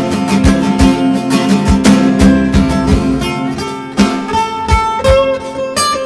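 Acoustic guitar played solo: picked melody notes over ringing low notes, with a crisp attack on each note.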